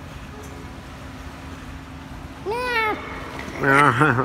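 A single short meow-like call, rising then falling, about two and a half seconds in, then near the end a loud wordless shout from a man, over a steady low hum.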